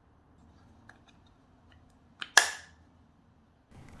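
Faint plastic ticks, then a short click and a louder sharp snap about two seconds in, from handling a plug-in power supply as its interchangeable plug pins are changed.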